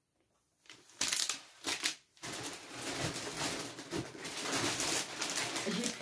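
Plastic food packaging crinkling and rustling as it is handled, in short bursts and then steadily. It begins with a split second of dead silence.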